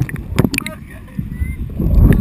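River water splashing and sloshing around a paddled whitewater raft, with a heavy rumble on the microphone and a couple of sharp splashes about half a second in.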